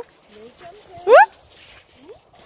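A woman's single loud, rising "No" about a second in, over a quiet background with a few faint high whines from a dog.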